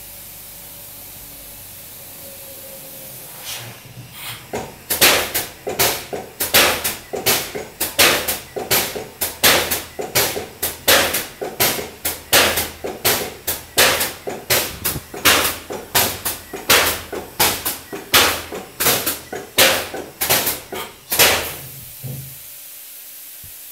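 Wintermann 900 Pro polyurea and foam spray machine starting to cycle: after a few seconds of steady hum, a fast, regular train of loud hissing pulses sets in, about two a second, as its pump strokes back and forth.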